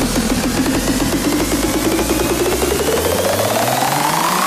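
Hard electronic techno: a fast, rapidly repeated synth note that begins to rise in pitch about halfway through, as a build-up, while the deep bass drops away.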